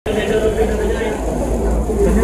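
Indistinct chatter of several voices over a steady low rumble.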